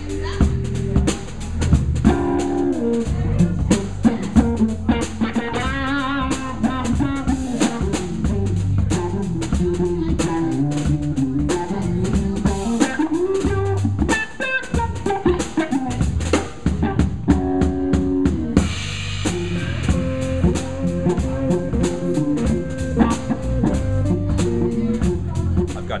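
Live jazz trio playing: a drum kit with snare, bass drum and cymbals keeping the groove, an eight-string fan-fret guitar walking the bass line, and a hollow-body electric guitar on top.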